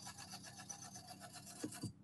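Fully 3D-printed electric motor spinning, heard faintly as a fast, even rasping rattle from its rotor and copper-tape commutator. The sound cuts off suddenly near the end.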